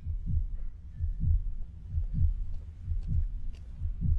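Heavily bass-boosted deep bass pulses repeating about twice a second in a heartbeat-like rhythm, the opening of a hip-hop track.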